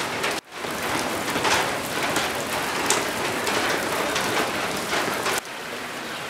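Steady rain falling on wet ground and surfaces, with many sharp individual drop hits. It dips out briefly about half a second in and drops to a quieter steady patter near the end.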